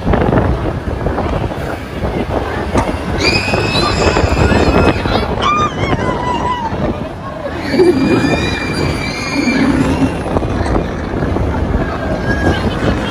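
Riders on a spinning fairground ride screaming: two long, high-pitched shrieks, about three seconds in and again near eight seconds, with shorter shouts between. Under them, loud rushing wind on the microphone from the ride's motion, and crowd noise.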